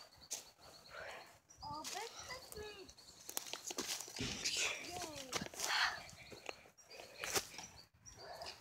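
Close rustling and clicking from a handheld camera being moved about and handled, with faint voices in the background.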